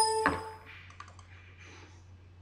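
A sudden loud knock with a brief ringing tone that dies away within about half a second, then a few faint clicks about a second in, like a computer mouse being clicked.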